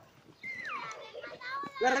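A young child's voice: a high call that slides down in pitch about half a second in, then a short higher-pitched utterance, both fairly quiet. A man's voice starts speaking near the end.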